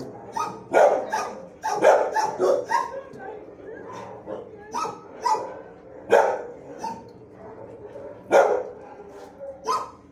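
Shelter dogs barking in a kennel block: a run of separate sharp barks every half second to two seconds, the loudest about a second in, near two seconds, around six seconds and past eight seconds.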